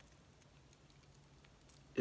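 Near silence: room tone, with a few faint ticks from a hard-plastic jerkbait being turned in the fingers.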